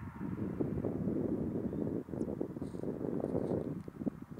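Wind buffeting the phone's microphone: a gusty, fluttering rumble that drops out briefly about halfway through.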